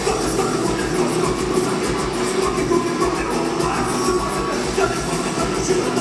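A heavy metal band playing live and loud: distorted electric guitar over fast, even drumming, heard through a crowd-held camera's microphone.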